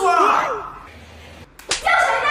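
A single sharp slap, like a hand striking skin, near the end.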